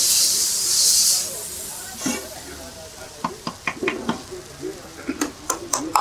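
Water on a hot cast-iron dosa griddle hissing loudly into steam as it is wiped with a wet cloth; the hiss fades away after about a second. Then a series of sharp clicks and knocks follows.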